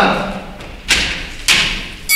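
Two heavy thumps about half a second apart, footfalls on a wooden stage floor, each followed by a short echo.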